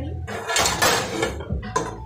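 Hot liquid hissing and sizzling in a skillet for about a second, as broth hits pan-fried Brussels sprouts to steam them.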